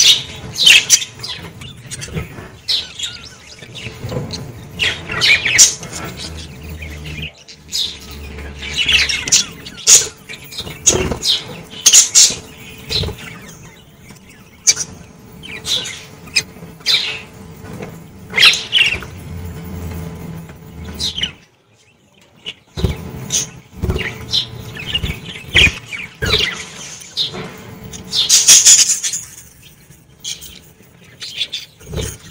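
A flock of budgerigars chirping and chattering, with many short, high calls overlapping throughout. There is a brief lull a little past two-thirds of the way through and a loud burst of calls near the end.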